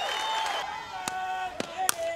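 Ballpark crowd noise with shouting voices, then a few sharp knocks. The loudest, near the end, is a softball bat striking a pitched ball.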